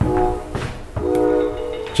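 Soundtrack of a video playing over the room's speakers: a held chord of steady tones, sounding twice for about half a second and then nearly a second.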